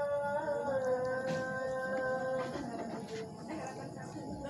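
A woman humming one held note for about two and a half seconds, followed by a few light clinks of a fork on a plate.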